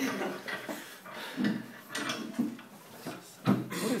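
Low, indistinct talk and murmuring voices, with a louder burst of voice about three and a half seconds in.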